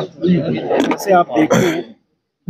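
A man's voice speaking, with no other sound standing out.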